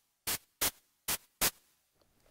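ATV aFrame electronic hand percussion struck four times in two quick pairs, each strike a short burst of white noise from its 'extra' section, giving a snare-like hit.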